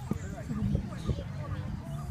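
Indistinct background voices with a few short, soft knocks.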